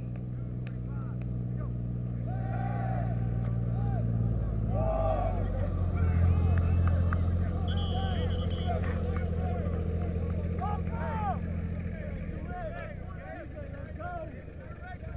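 A small engine runs steadily nearby, stepping up in speed about five seconds in and stopping shortly before the end, under many overlapping voices shouting across a football practice field. A short whistle blast sounds about eight seconds in.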